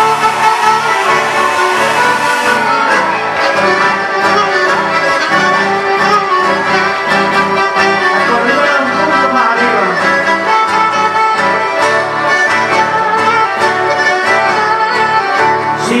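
Live instrumental chamamé passage: two accordions play the melody together over a strummed acoustic guitar and a steady, pulsing bass line.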